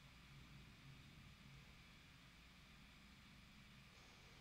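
Near silence: faint room tone with a low, steady hum.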